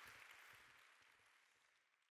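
Faint audience applause fading out steadily to near silence.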